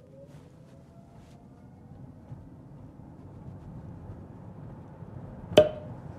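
Hyundai Ioniq 5 accelerating from a standstill in Eco mode, heard from the cabin: road and tyre noise growing steadily louder as speed builds toward 40 mph, with a faint rising electric-motor whine early on. The acceleration is the slow, held-back kind that the battery preconditioning update brings to Eco mode. A short sharp click sounds near the end.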